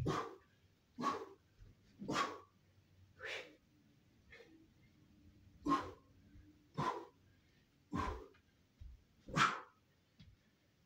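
Sharp, forceful exhalations, one with each punch or strike of karate shadowboxing, coming about once a second, nine in all, the one near the end the loudest.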